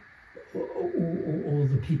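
A brief pause, then a man's low voice making drawn-out, hesitant hums like "um" and "mm" for about a second and a half while he searches for a word.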